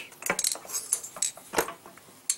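Light metallic clicks and clinks as a Predator 212cc Hemi cylinder head is turned over in the hands, its rocker arms and loose pushrods knocking together. There are a handful of short clicks, the loudest about one and a half seconds in.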